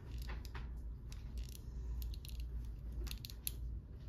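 Faint handling sounds of fingers on a small metal enamel pin and its plastic sound disk: a few light, scattered clicks over a low steady room hum.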